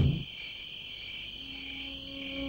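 Crickets chirring in a steady, high, even trill, a night-time ambience on a film soundtrack.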